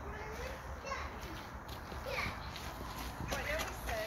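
Faint children's voices talking and calling in the background, in short scattered snatches over a low steady rumble.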